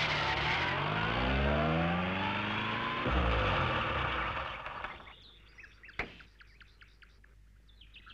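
Forward-control jeep van's engine revving as it drives down a dirt track: its pitch climbs for about three seconds, drops sharply, climbs again, then fades out about five seconds in. Faint bird chirping follows, with one sharp click about six seconds in.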